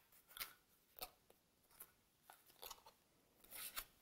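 Large tarot cards being shuffled by hand: faint, crisp clicks and snaps as the card edges strike and slide against each other, a few scattered ones, then a quicker cluster near the end.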